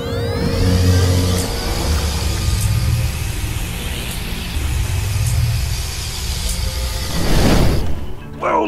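Sci-fi energy-blast sound effect for a toy ghost blaster firing: a rising whine, then a steady loud electric hum over a low rumble, with a louder whoosh about seven seconds in before it cuts off.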